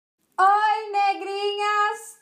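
A woman's voice singing out a high, drawn-out phrase, starting about half a second in and held on nearly one pitch with a couple of short breaks.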